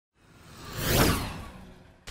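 Whoosh sound effect for an intro logo, swelling to a peak about a second in and then fading away.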